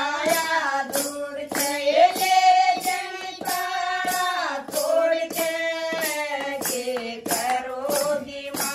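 Women singing a Haryanvi folk bhajan, with the melody carried throughout. A wooden khartal with jingles and hand claps keep a steady beat under the voices.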